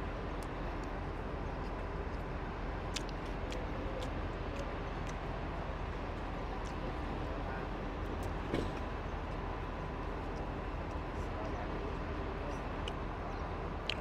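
Steady outdoor urban background noise: an even low hum with faint distant voices and a few faint clicks.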